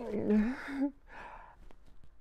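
A man's voiced, breathy sigh of hesitation, under a second long with a falling pitch, followed about a second in by a short breath.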